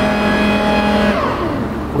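Boat thruster motor on a Cutwater 30 whining at a steady pitch as it pushes the boat off the dock. Past the middle of the sound its pitch slides down as it winds down.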